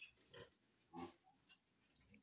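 A couple of short, faint pig grunts in the first second, otherwise near silence.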